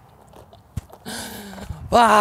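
A man's long, breathy voiced sigh starting about a second in, after a small click: a release of breath after a near miss.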